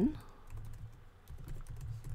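Typing on a computer keyboard: a quick run of light key clicks.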